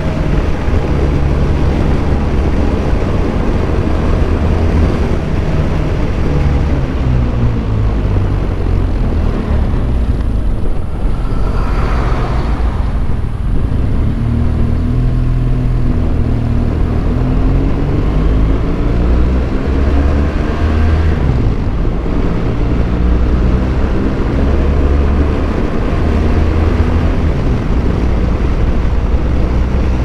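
BMW R1200GS boxer-twin motorcycle engine running under way, heard over heavy wind rumble on the microphone. The engine pitch falls around ten to thirteen seconds in as the bike slows, then climbs again as it picks up speed.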